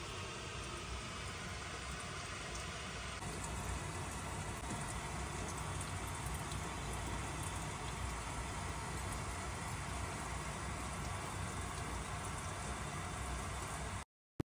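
Water from a garden hose running onto the roof overhead, heard from inside the attic as a steady hiss, with faint ticks of water dripping through a roof leak. The hiss grows a little louder about three seconds in.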